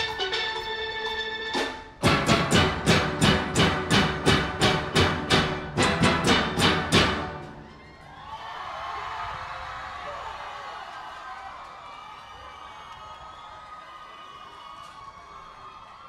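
Steel orchestra of steelpans backed by drums plays its closing run: loud unison strokes about three a second that stop sharply about seven seconds in, ending the piece. Crowd noise, cheering and applause, follows at a lower level.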